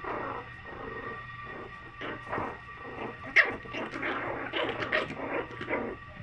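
Young puppies, four to five weeks old, making short, irregular vocal sounds as they play-wrestle. The loudest comes a little past halfway.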